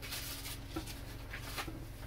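Faint scratchy handling noises, a few light ticks and rustles, of a package being picked up off-camera, over a steady low hum.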